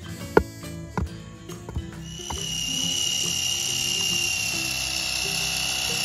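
A few dull knocks as dirt is pounded down around a wooden post. About two seconds in, a cordless drill starts and runs at a steady high whine, boring a pilot hole into the post for a hook.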